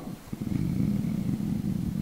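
A man's drawn-out, low, creaky hesitation sound, a filled pause held for well over a second while he searches for the next word.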